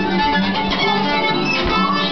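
Violin playing a tune in quick rhythm, with a low note repeating beneath it.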